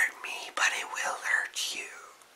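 A man whispering a few words in a hushed, breathy voice, fading out near the end.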